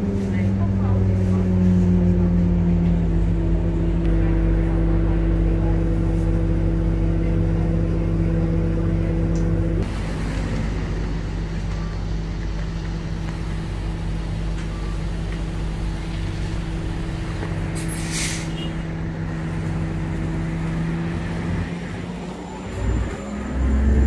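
Orion VII hybrid-electric transit bus running, with a steady hum and low rumble, first heard from inside the cabin and then from the curb as it stands at a stop. A short burst of air hiss comes about 18 seconds in.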